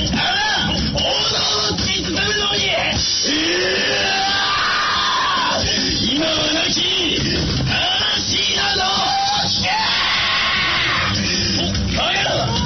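Loud recorded song with yelled vocals over a dense backing track, played over an outdoor loudspeaker for a dance routine.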